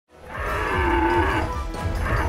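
Cartoon Spinosaurus giving one long, low call, from about half a second in to about a second and a half in, over a deep rumble.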